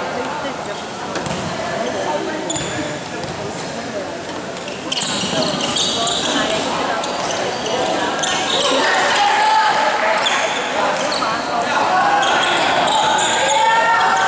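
Basketball game in an echoing gym: a ball bouncing on the wooden court, sneakers squeaking and players and spectators calling out. The squeaks and voices grow louder about five seconds in as play picks up.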